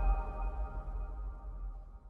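Electronic logo sting dying away: a held ringing chord of several steady high tones over a low rumble, fading steadily throughout.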